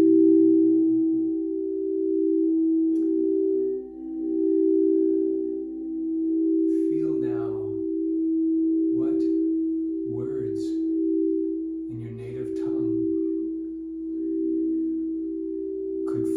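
Two crystal singing bowls, tuned to 432 Hz, rung steadily with mallets. Two sustained tones sound together, the higher one pulsing as the overall level swells and eases. A voice makes a few short vocal sounds over them in the middle of the stretch.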